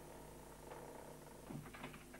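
Faint steady hum of several low tones from an old videotape soundtrack, with a few soft knocks near the end.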